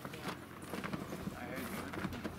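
A large cloth flag flapping in the wind, its fabric snapping in quick, irregular cracks.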